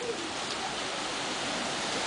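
Steady, even wash of calm sea water and small waves.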